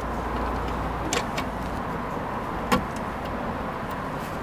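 Three light plastic clicks over a steady low hum: a new plastic retaining clip being pressed into the car's door glass at the window-regulator rail.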